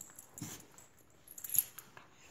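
Wheaten terrier puppy scuffling and biting at a bare foot: a short noise about half a second in, then a flurry of sharp clicks and rustles around a second and a half in.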